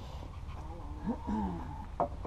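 Hens in a backyard chicken run making soft, low clucking calls, a short cluster of falling notes about a second in, over a steady low rumble.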